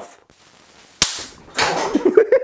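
A single loud, sharp electrical crack about a second in as a charged capacitor discharges through a hand-held probe, dying away quickly; a strong zap.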